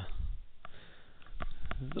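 A short breath through the nose, then a few light, sharp clicks of handling, with a word spoken at the very end.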